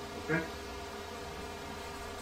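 A steady electrical buzz: a constant hum with many evenly spaced overtones, unchanging through a pause in the talk.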